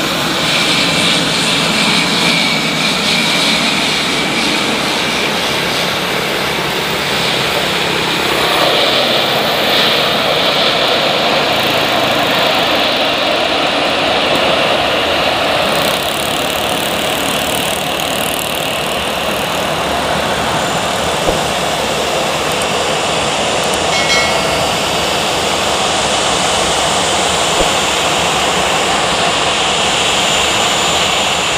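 Jet airliner engines running on the runway, a loud, steady rushing noise that holds throughout.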